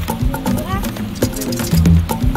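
Dub music track: deep bass notes under a steady beat of sharp, clicky percussion, with a short rising sound a little past halfway through.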